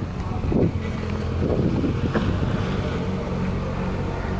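An engine running steadily with a low drone and a faint hum.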